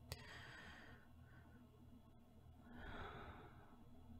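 A woman's slow, soft breathing close to the microphone, as in sleep: a faint breath just after a small click at the start, then a longer, stronger breath about three seconds in.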